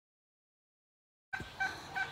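Silence for about the first second, then two short calls from domestic fowl, roughly half a second apart, over quiet outdoor ambience.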